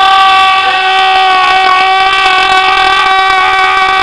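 A loud, long, high-pitched tone rich in overtones, held at one steady pitch as the prop ray gun is fired.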